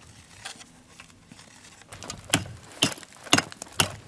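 Rock hammer striking a rock outcrop to chip off rock samples: four sharp blows about two a second in the second half, after faint handling clicks.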